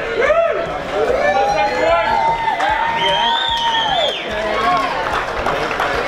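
A crowd cheering and whooping, many voices overlapping, with one long drawn-out shout in the middle.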